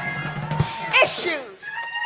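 A voice calls out with sharply rising and falling pitch, loudest about a second in, over held keyboard notes from the church band.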